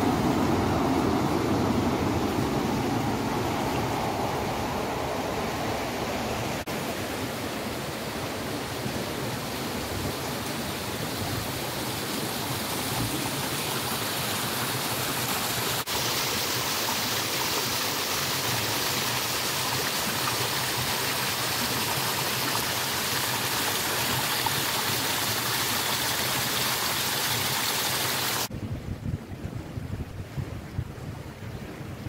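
Steady rush of flowing water: a river's current, then a small stream running close by, brighter and hissier. Near the end the water sound cuts off suddenly and gives way to a quieter, gustier outdoor sound.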